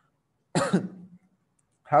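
A man coughs once, a short harsh burst about half a second in, then starts speaking near the end.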